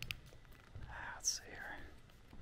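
A person whispering briefly, about a second in.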